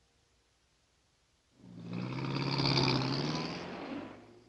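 A car driving past, its engine hum and tyre noise swelling about a second and a half in and fading away near the end.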